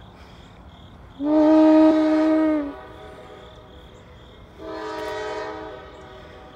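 CSX GE diesel locomotive's air horn sounding two blasts of several notes at once: a long, loud one about a second in and a shorter, quieter one near the end, over the train's low running noise.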